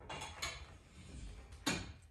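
Clattering of hard objects being handled: a light knock about half a second in, then a louder, sharp clank with a short ring near the end.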